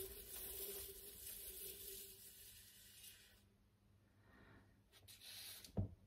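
Faint whir of a turntable spinning a freshly poured acrylic coaster, fading out over about three seconds as it coasts to a stop, then near silence with a soft click near the end.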